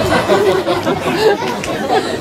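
Voices talking and chattering in a large hall.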